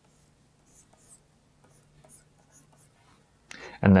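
Faint, intermittent scratching of a stylus drawing strokes on a graphics tablet, over a steady low hum.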